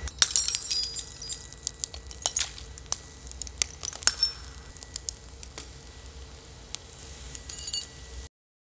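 Thin stemmed wine glasses cracking and shattering as hot molten glass drops into them: a dense burst of sharp clinks and high ringing tinkles at first, then scattered cracks and tinkles of breaking glass, with a short cluster again near the end.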